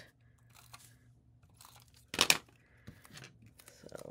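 Paper being handled, with one short tearing rustle about two seconds in and faint rustling around it.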